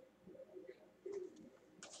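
Near silence: room tone with a few faint, short low sounds.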